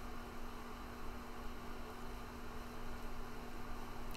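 Steady low electrical hum over a faint even hiss: the background noise of the recording during a pause in speech.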